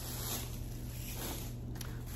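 Faint rustling and handling of packaged items being moved about, over a steady low hum.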